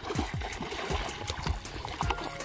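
Hooked striped bass splashing repeatedly at the water's surface beside the canal bank, in a run of short, uneven splashes.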